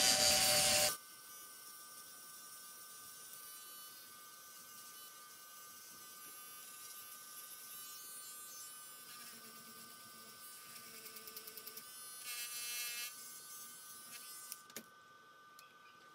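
Small handheld rotary tool running, cleaning up the ends of a thin wooden strip for a scarf joint: louder for about the first second, then a quiet steady whine. It switches off with a click near the end.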